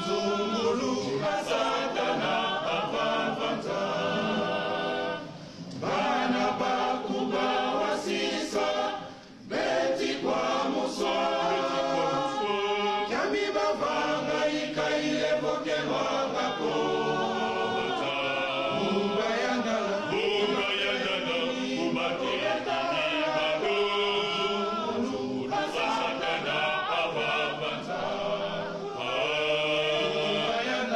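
Male choir singing, with two brief breaks between phrases about five and nine seconds in.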